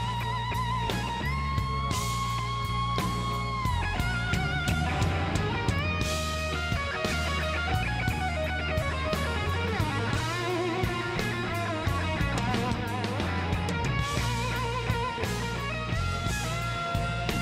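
Live blues-rock band music: an electric guitar solo of long held, bent notes with vibrato over drums and bass.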